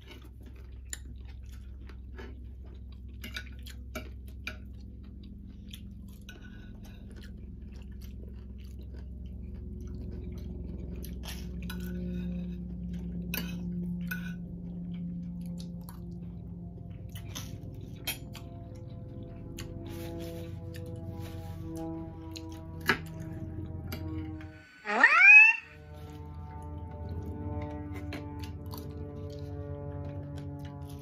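Close-miked chewing of breakfast food, with scattered light clicks of forks on plates, over quiet background music. About 25 seconds in, a brief loud rising whistle-like tone sweeps up in pitch.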